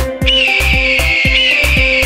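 An eagle screech sound effect: one long, high, slightly wavering scream starting about a quarter second in and held for over two seconds. Under it runs a steady thumping dance beat.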